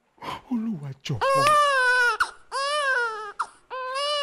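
A man wailing in grief: after a few short sobs, three long high-pitched cries, each rising and then falling in pitch.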